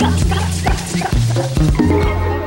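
A live band playing, with a repeating bass line, drums and shaken maracas, and a woman's voice singing over it.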